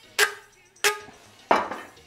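Three sharp knocks on a sheet-metal amplifier cover, spaced a little over half a second apart. The first two ring briefly with a metallic tone, and the third is duller.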